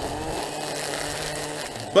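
Milwaukee M18 brushless battery string trimmer running steadily, its line cutting grass along the base of a wooden fence; an even electric motor whine with the hiss of the spinning line.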